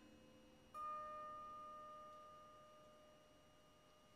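A single bell-like chime struck about three-quarters of a second in, its clear tone ringing on and slowly fading.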